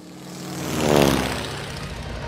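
Propeller biplane flying past, played as a sound effect over the show's loudspeakers: the engine drone swells to its loudest about a second in, its pitch dropping as it passes.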